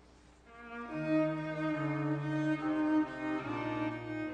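A duet of two bowed string instruments begins about half a second in, slow and sustained: a low part in long notes that steps down beneath a held higher part.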